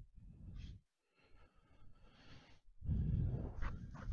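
Handling noise close to the microphone as a rotary attachment is worked into place: rustling and low knocks, a louder low bump about three seconds in, and a couple of light clicks near the end.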